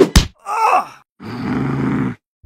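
Cartoon sound effects: a sharp double thwack as a basketball hits a gorilla, then a short groan. About a second later comes a steady rushing noise that lasts to the end.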